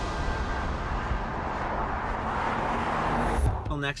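Car driving on the road, a steady rush of tyre and engine noise that builds and then cuts off suddenly about three and a half seconds in.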